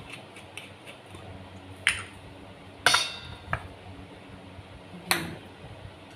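Four short clinks of kitchen utensils and glass bottles being handled and set down on a counter, the loudest about three seconds in with a brief metallic ring.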